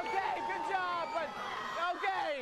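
Excited, high-pitched shouting voices, several at once, like children yelling encouragement.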